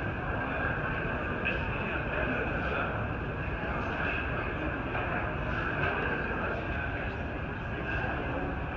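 Ambience of a large exhibition hall: a steady drone of ventilation noise with a murmur of many distant voices.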